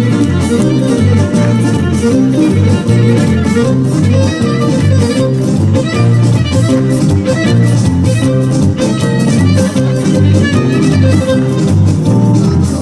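Live band playing a lively folk tune: a bowed string lead melody over plucked strings, with a bass guitar keeping a steady rhythmic beat.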